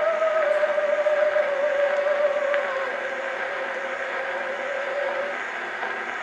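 Edison William and Mary console phonograph with a True Tone diaphragm playing an acoustic-era recording of an operatic soprano. She holds one long note with wide vibrato that sinks slightly in pitch and fades out a little after five seconds in. Steady record surface hiss runs underneath, and there is no bass.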